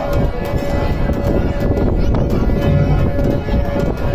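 Live Rajasthani devotional folk song: a harmonium holds a steady reed tone under a singer's voice, with a large two-headed hand drum beating a rhythm.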